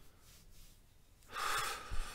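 A person takes a quick, audible breath in about one and a half seconds in, after a stretch of near-quiet room tone.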